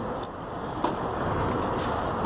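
A tennis ball struck once by a racket a little under a second in, a short sharp knock over steady outdoor background noise like distant traffic.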